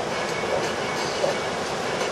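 Steady wash of ocean surf breaking and running up the beach.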